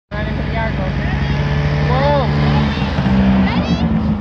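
Snowmobile engine running steadily, its pitch shifting a little past halfway, with voices calling out over it.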